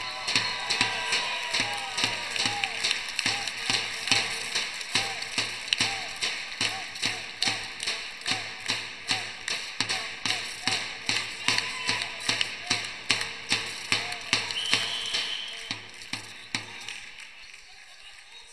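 Spectators clapping in unison, about two claps a second, with scattered shouts over the crowd noise of a sports hall; the clapping dies away near the end.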